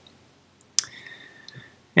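A sharp click about two-thirds of a second in, followed by a faint hiss with a thin whistling tone that lasts under a second.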